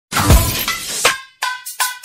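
Intro sound effects: a crash like breaking glass with a second hit about a second later, then three quick short hits with a bright ringing tone.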